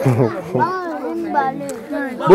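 Several children's high voices calling out and chattering over one another as they crowd in to be handed something.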